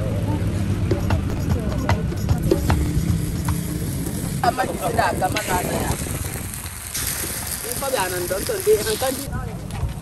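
Rice batter sizzling in the wells of a hot cast-iron masa pan over a wood fire, with a few sharp clicks and scrapes of a metal spatula turning the cakes. Voices talk briefly about four seconds in and again near the end.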